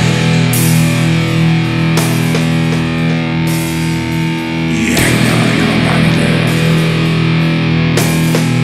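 Heavy metal music: distorted electric guitar holding long, sustained chords, moving to a new chord about five seconds in.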